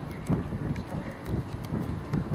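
Wind buffeting the microphone in irregular low gusts, with a few faint ticks above it.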